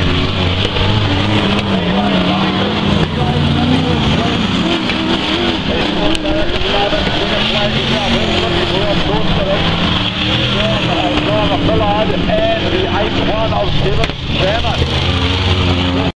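Several open-wheel speedway racing cars (sprintcars and minisprints) running on a dirt oval, their engine notes rising and falling as they circulate.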